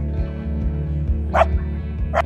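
A dog gives one short, sharp bark about one and a half seconds in, over background music with a steady beat.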